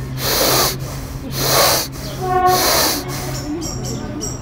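A man breathing hard in the Wim Hof / Tummo hyperventilation pattern: three strong, rushing breaths about a second apart, each with a forced inhalation and an unforced exhalation.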